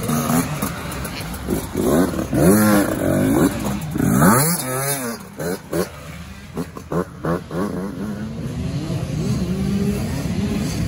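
Yamaha YZ85 two-stroke dirt bike engine revving in repeated rising surges as it is ridden along a bush trail. Near the middle come a few short throttle blips, and then it runs more steadily.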